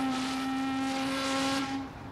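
A ship's horn sounding one long, steady blast of about two seconds over a steady hiss, cutting off near the end.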